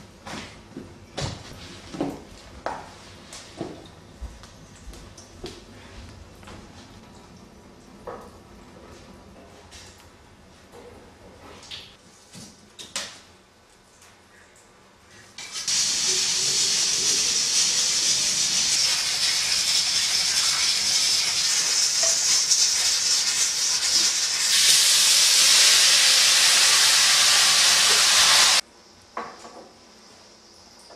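Scattered knocks and clatter of kitchen work. Then a loud, steady hiss of steam escaping from cooking pots on a stove comes in suddenly about halfway through, grows louder a few seconds before the end, and cuts off sharply.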